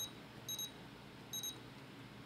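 Three short, high-pitched key beeps from a Futaba FASST 14-channel RC transmitter as its menu buttons are pressed to move between setup screens.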